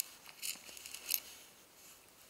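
A single click, then a few faint, brief rustling scrapes: clothing rubbing as the shoulders circle.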